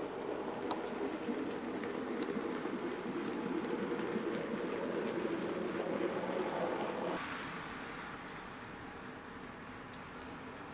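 N gauge model train running on its track: a steady rumble of the wheels and motor, which drops away about seven seconds in as the train moves off.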